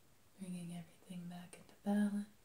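A woman's soft voice speaking in three short, evenly pitched phrases with pauses between them.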